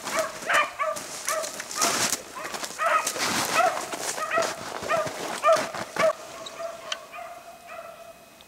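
Rabbit hounds baying on a running rabbit's trail: repeated short, pitched yelps, a few a second and overlapping, the sign of the pack still on the scent and keeping the chase going. A few short bursts of rustling about two and three seconds in.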